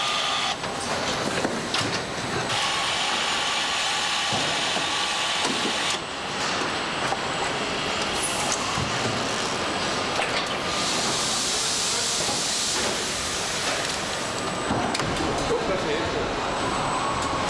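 Car-factory assembly-line machinery noise: a dense hiss and clatter with scattered clicks that changes abruptly several times.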